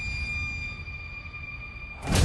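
Trailer sound design: a steady high-pitched electronic tone held over a low rumble, slowly fading.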